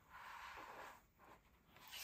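Near silence, with a faint dry rustle of kraft cardstock pages being handled during the first second.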